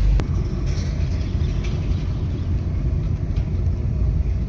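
Car driving, heard from inside the cabin: a steady low rumble of engine and road noise. A single brief click comes just after the start.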